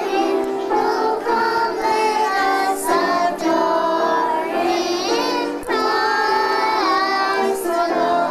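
A group of young children singing together, holding notes in steady melodic phrases with brief breaths between them.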